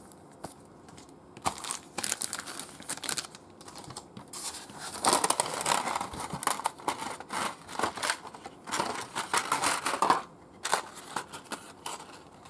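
Clear plastic packaging crinkling and crackling as it is handled: a plastic bag, then a clear plastic blister tray lifted and turned. It comes in irregular bursts, loudest in the middle, and dies down about two seconds before the end.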